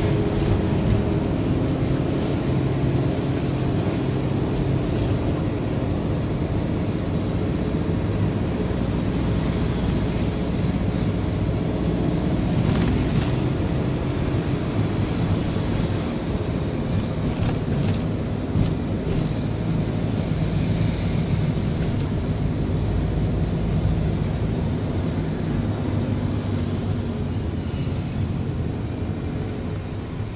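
Motorhome's engine and road noise heard from inside the cab while driving: a steady low drone with a few engine tones.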